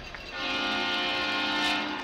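A loud horn chord, several steady pitches sounding together like a train-style arena horn, held for about a second and a half before cutting off.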